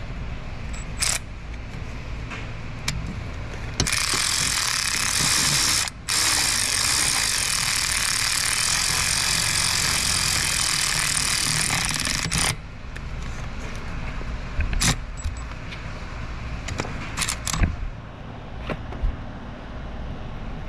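A power ratchet on a swivel extension and spark-plug socket, tightening a rear spark plug on a 5.7 HEMI V8. It runs with a steady hissing whir for about eight seconds, stopping briefly near the start, with a few sharp clicks of tool and socket before and after.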